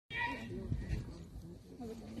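Distant people's voices chattering, with a short high-pitched call right at the start.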